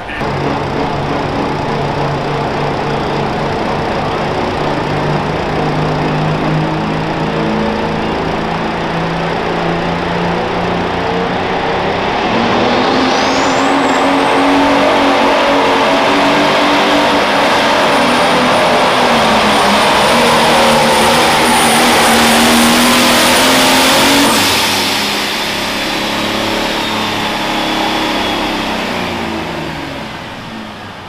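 Turbocharged diesel Pro Stock pulling tractor running hard under load. About 13 seconds in, the engine pitch rises and a high turbo whistle climbs and holds. Near 24 seconds the whistle and full-power sound cut off suddenly as the pull ends, and the engine winds down.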